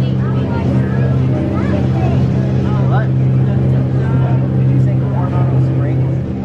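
Shuttle boat's engine running steadily under way, a continuous low hum.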